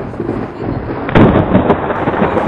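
A loud rumbling boom about a second in, over steady background noise.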